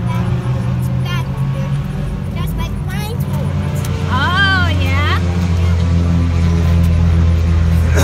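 Steady low drone of a nearby vehicle engine, growing louder about halfway through. A child's high voice rises and falls briefly near the middle.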